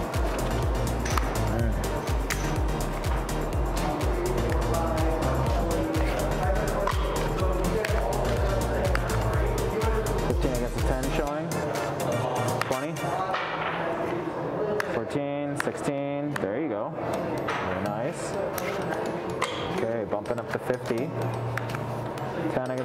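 Background music with a steady bass beat. A little past halfway the bass drops out and the music carries on lighter.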